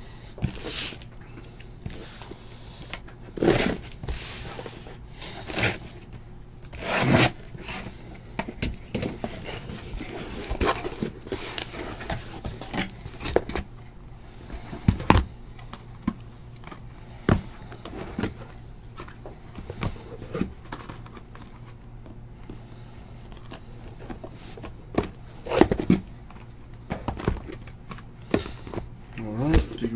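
Shrink-wrapped trading-card hobby boxes and their cardboard case being handled and unpacked: irregular scrapes, rustles of plastic wrap and light knocks, with a few louder bumps scattered through.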